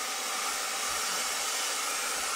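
Dyson hair dryer with a diffuser attachment running steadily on its second speed setting, a constant airy rush of blown air.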